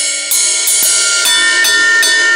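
Sabian Pro Sonix ride cymbal struck repeatedly with a drumstick in quick strokes on the bow near the bell. It builds into a dense, sustained ring with clear pitched tones, dark and dirty.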